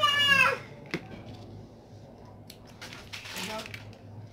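A child's high voice briefly at the start, then a single sharp click about a second in, followed by faint rustles of grosgrain ribbon and thread being handled, over a low steady hum.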